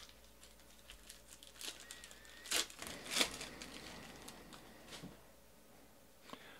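A trading card pack being picked up and its wrapper torn open: a series of short crinkling rips, the strongest two about two and a half and three seconds in.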